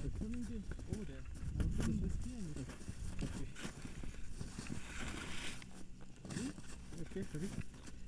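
Indistinct, quiet voices talking, over a steady low wind rumble on the microphone, with a short hiss about five seconds in.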